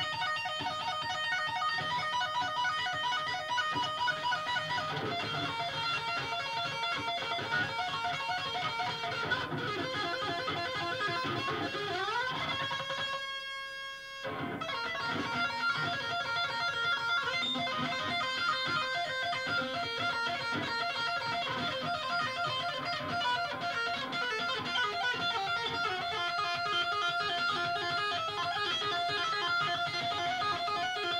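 A small rock band of electric guitars, electric bass and drum kit plays an instrumental passage live. About twelve seconds in, a note glides upward and rings on alone for a moment as the drums and bass drop out, then the full band comes back in.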